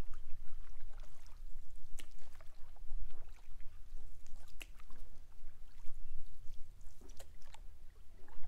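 Canoe paddling on calm water: soft splashing and trickling from the paddle, with a few short clicks and knocks against the canoe, over a steady low rumble.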